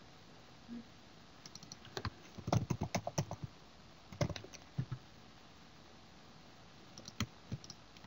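Typing on a computer keyboard in short bursts of quick keystrokes: a longer run over the first few seconds, a brief burst near the middle and a few keys near the end, with pauses between.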